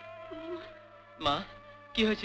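Old film soundtrack with a held background-music note, and one short vocal cry about a second and a quarter in.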